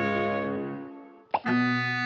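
Cartoon soundtrack music fades out, then a short, loud, falling 'plop' sound effect is heard about halfway through, and a new music cue starts straight after it.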